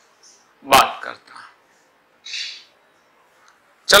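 One short, sharp, loud bark-like call about three quarters of a second in. It is followed by softer sounds and a brief hiss about two and a half seconds in, while a marker writes on a whiteboard.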